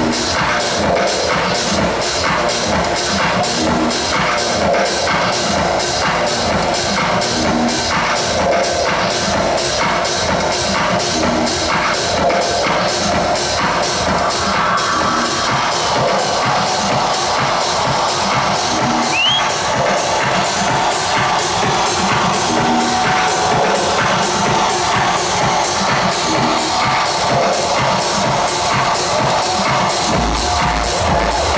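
Loud techno playing over a club sound system in a DJ set, with a steady, driving beat that runs unbroken.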